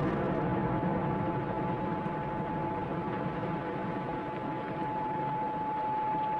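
Steady, dull noise from an explosive blast in an open-pit iron ore mine, lingering after the detonation. A single steady high tone comes in about a second in and grows louder toward the end.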